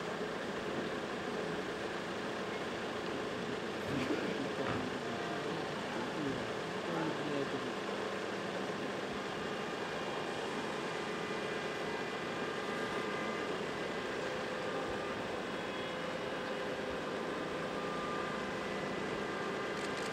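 Street ambience: a steady hum of traffic with indistinct chatter from a waiting crowd, a little louder for a few seconds about four seconds in.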